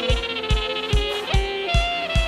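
Tallava band music: a saxophone playing a sustained melody over a steady kick drum beat, about two and a half kicks a second.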